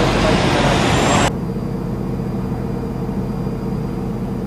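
Steady low rumble of idling vehicle engines, with a broad hiss over it that cuts off abruptly about a second in, leaving only the low engine hum.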